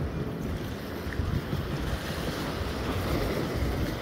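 Wind buffeting the phone's microphone over small waves washing against a rock jetty: a steady noise with no distinct events.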